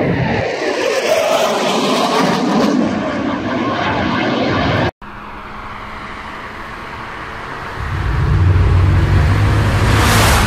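F-22 Raptor fighter jet flying low overhead, its engine noise loud and wavering in pitch, cut off suddenly about five seconds in. A second fighter jet's fly-by follows: steady jet noise that swells into a deep rumble for the last two seconds.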